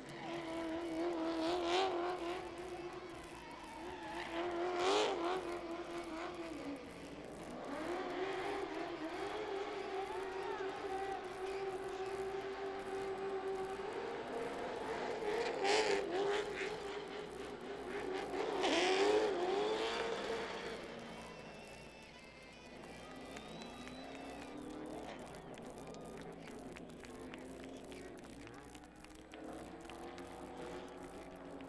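Late model stock car's V8 engine revving hard during a burnout, the tires spinning and squealing, with several sharp rev peaks. In the last third it drops to a lower, quieter run as the car rolls slowly.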